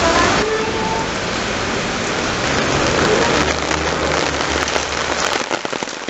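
Steady rain falling on a wet street, a loud, even hiss with no gaps.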